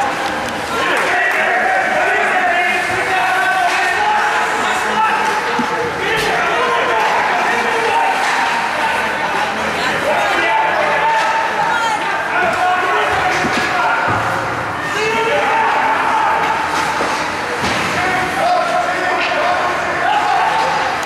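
Voices calling out across an indoor ice rink during a youth hockey game, with scattered sharp slams and thuds of the puck, sticks and players hitting the boards.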